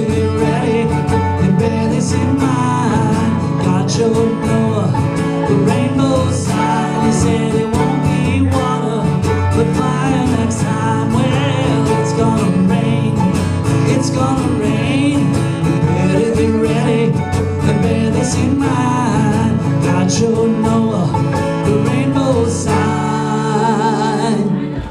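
Acoustic guitar and mandolin playing a continuous uptempo bluegrass-style instrumental break, recorded live.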